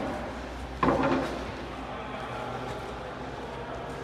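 A single sharp bang about a second in, ringing out in the echo of a concrete tunnel, over a steady low hum.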